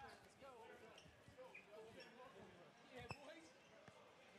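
Faint, indistinct voices talking, with a few sharp knocks or thumps; the loudest knock comes about three seconds in.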